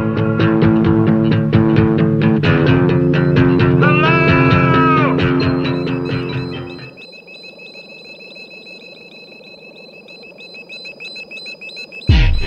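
Segment jingle: rock-style music with bass and guitar over a steady beat, loud for about seven seconds, then dropping suddenly to a quiet held high tone.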